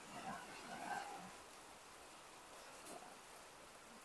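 Faint, steady hiss of hurricane wind and rain in the trees, with a quiet voice murmuring in the first second or so.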